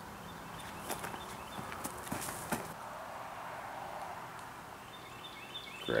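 Footsteps crunching and shuffling through dry leaf litter, with a few sharper crackles about one to two and a half seconds in.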